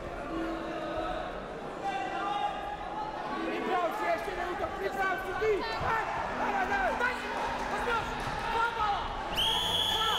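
Freestyle wrestling bout in a large echoing hall: scattered shouting voices and dull thuds of bodies on the mat as the wrestlers grapple. Near the end comes a sharp, steady referee's whistle blast, stopping the action for a push-out.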